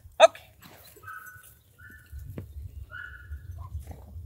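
A sharp spoken "okay", then three short, high, thin whines from an excited German shorthaired pointer, over a low rumble of wind on the microphone.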